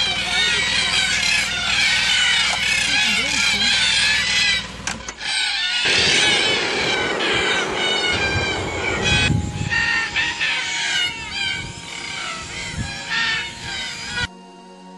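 A flock of birds calling: a dense, continuous chatter of many overlapping high calls. After a break about five seconds in, the calling goes on from black cockatoos perched in a tree, over a low rumble.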